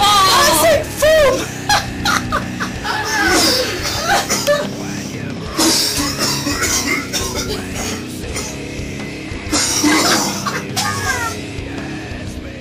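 Heavy rock music with drums playing throughout, over men's laughing and shouting that is loudest at the start and again about ten seconds in.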